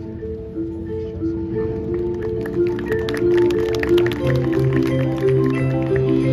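High school marching band playing: held notes move step by step through a slow line, and quick mallet-percussion strikes join about two seconds in. The music grows steadily louder, and a deep held note comes in past the middle.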